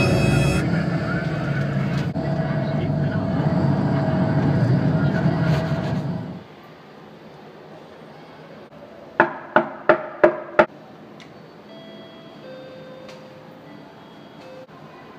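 Low rumbling vehicle ride noise that cuts off suddenly about six seconds in, leaving a quieter background. A few seconds later come five short electronic beeps in quick succession, typical of buttons pressed on a door keypad.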